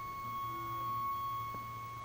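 A steady high-pitched electronic tone with a fainter tone an octave above it, over a low hum that fades near the end.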